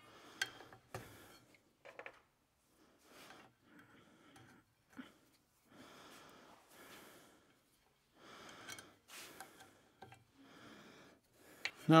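Faint clicks and light scraping of small parts being handled on a CVT secondary clutch as its sliders are pried out and replaced, with breathing heard between them.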